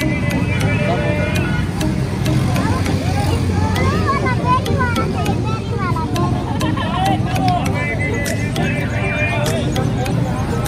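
Busy street: a steady rumble of passing traffic and engines with people's voices chattering close by.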